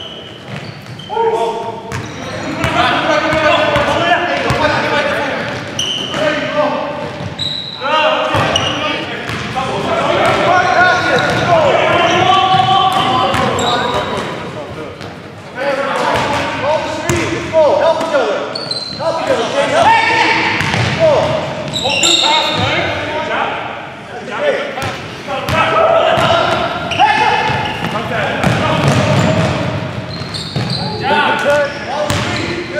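Game sound of a basketball being dribbled and bounced on a hardwood gym floor, with players' voices calling out indistinctly, all echoing in a large hall.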